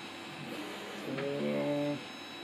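A man's voice holding a long, steady hesitation hum ("mmm") for most of the second half, cut off at the end, over a faint steady electrical hum of room equipment.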